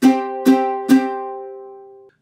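Ukulele strummed downward three times on a C5 chord, about half a second apart, then left to ring and fade.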